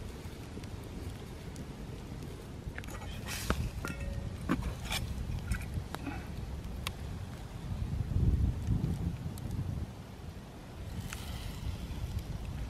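Wood campfire crackling, with a run of sharp pops and snaps between about three and seven seconds in, over a low rumble that swells about eight seconds in.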